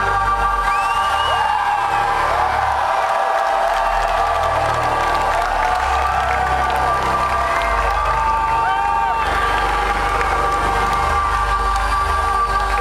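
A live rock band's final held chord rings out through a concert PA, steady and loud, while the crowd cheers with scattered whoops.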